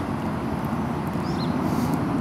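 Steady low outdoor background rumble.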